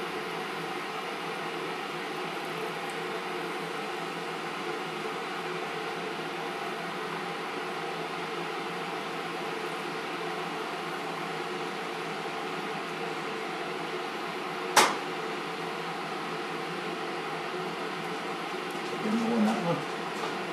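Steady whirring hum of a kitchen appliance fan, even throughout, with one sharp click about fifteen seconds in.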